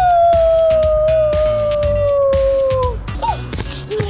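One long dog-like howl, held about three seconds and sliding slowly down in pitch, followed by a short rising-and-falling yelp near the end. Background music with a steady beat plays underneath.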